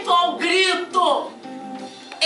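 A woman's voice vocalizing without words in short, wavering phrases that end in a falling slide about a second in. Soft, sustained instrumental notes are held underneath.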